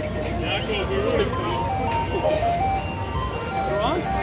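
An electronic chime tune of plain single notes, climbing step by step in pitch through the middle, with voices in the background.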